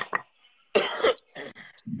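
A person coughing several times in short harsh bursts, with some throat clearing.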